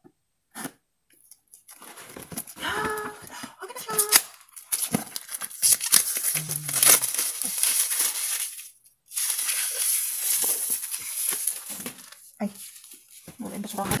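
Clear plastic shrink-wrap being cut, torn and peeled off a phone box, crinkling and rustling in long stretches with a short break near the middle.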